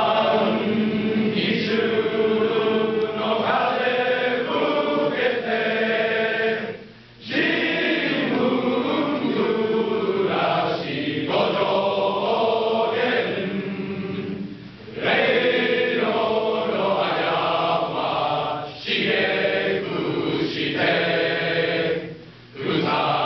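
Large men's choir singing together in long phrases, with short breaks between phrases about seven and fifteen seconds in.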